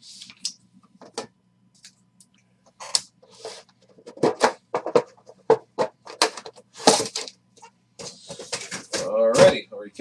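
Plastic card holders and cards clicking and knocking against a tabletop as they are handled and set down, in a quick string of sharp clicks through the middle. A man's voice starts just before the end.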